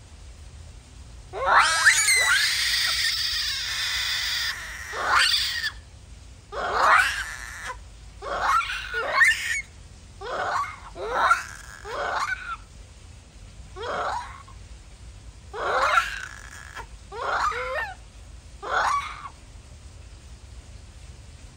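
Japanese macaques screaming. First comes one long, loud call of about four seconds with quick rising sweeps, then about a dozen short calls that glide up and down, roughly one every second or so.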